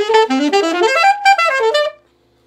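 Saxophone playing a fast bebop lick, a quick run of separately tongued notes climbing and falling in pitch, about eight to ten notes a second, that stops sharply at the end.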